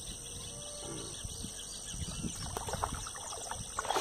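Steady high-pitched chirring of insects such as crickets, with a few faint bird calls. Partway through there is a light splash as a small tilapia is let go back into the water.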